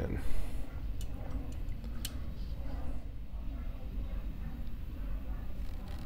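A few light clicks and taps of small grinder parts being handled and fitted, the sharpest about two seconds in, over a low steady hum.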